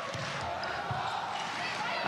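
Crowd noise in a sports hall during a volleyball rally, with the thud of the ball being served and struck.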